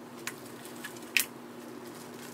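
Plastic sandwich bag filled with puffy paint crinkling as it is lifted out of a plastic cup and handled, with a couple of short crackles, the loudest a little over a second in. A faint steady hum runs underneath.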